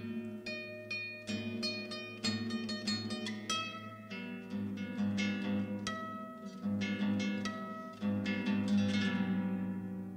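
Solo classical guitar playing a contemporary piece: quick runs of plucked notes over ringing low bass notes. Near the end the last notes are left to ring and die away.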